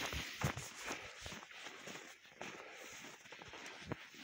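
Footsteps in snow, about two to three steps a second, growing fainter and sparser after about two seconds.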